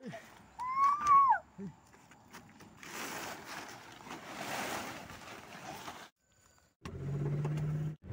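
A plastic tarp cover rustling as it is pulled off a Suzuki Alto, with one short, loud rising-and-falling call about a second in. Near the end, the car's engine running steadily, heard from inside the cabin.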